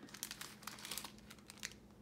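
Sheets of paper and card rustling and sliding across a wooden tabletop as they are pushed aside: a light, irregular patter of crinkles and small ticks.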